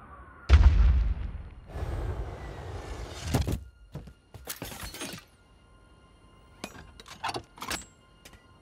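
Film sound effects of an armored suit crashing into the ground: a heavy impact about half a second in, then more crashing impacts and a rush of debris over the next few seconds. A few light metallic clicks follow near the end.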